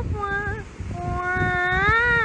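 A single pitched voice holding drawn-out notes that bend in pitch, the last and longest rising near the end before falling away, over a low rumble.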